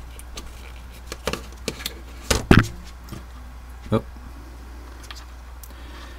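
A scattering of short, sharp clicks and taps from small parts and wires being handled and connected at a workbench, the loudest a quick double click about two and a half seconds in. A steady low hum runs underneath.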